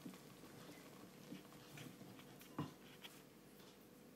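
Near silence, with a few faint taps and one light knock a little over halfway through: a wooden spoon stirring thick oatcake batter and knocking against the ceramic mixing bowl.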